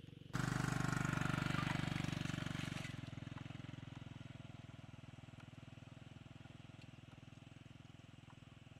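Small motorcycle engine running, starting abruptly and loud, then fading steadily from about three seconds in as the bike rides away across the field.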